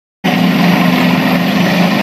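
Engines of a column of tanks and tracked armoured vehicles running, a loud, steady low hum over a heavy hiss. The sound cuts in abruptly about a quarter second in.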